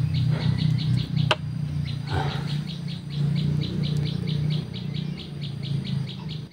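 A bird calling in a rapid, even series of short high chirps, about six a second, over a steady low hum. A single sharp click comes about a second in.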